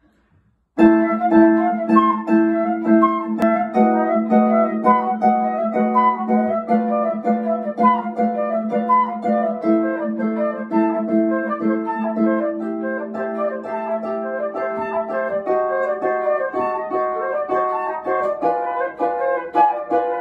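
Concert harp plucking a fast, rhythmic repeated accompaniment figure, starting suddenly about a second in.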